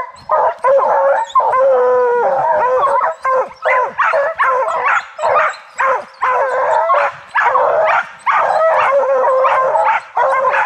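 Pack of bear hounds baying at a tree: continuous overlapping barks and yips with a long drawn-out howl about two seconds in. It is tree barking, the sign that the dogs have a bear treed.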